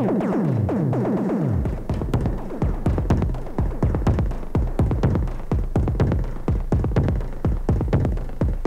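Make Noise modular synthesizer playing a sequenced electronic drum pattern. Each hit has a fast falling pitch sweep, from the exponential, short-decay MATHS function driving the QPAS filter's frequency. About a second and a half in, the pattern changes to tighter, denser hits over a deep steady bass.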